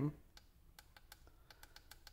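Faint, irregular small clicks as hands press and hold the push button on an acrylic-cased battery cell monitor and shift their grip on it.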